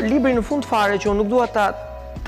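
A man speaking continuously, reading aloud from a book.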